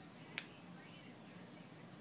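A single sharp click about half a second in, over a faint low room hum.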